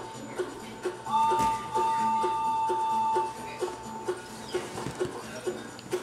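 Children's television music playing from a TV: a steady plucked rhythm of short low notes at about two to three a second, with a long held higher tone starting about a second in and fading a couple of seconds later.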